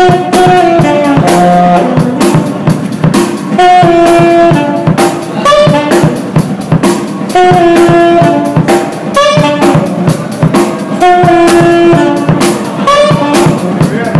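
A live band's recorded music: held brass notes over a steady drum-kit beat.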